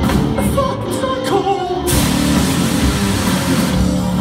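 Live rock band playing: a singer over electric guitars, keyboard and drums. About halfway through, the cymbals crash and keep washing over the rest of the music.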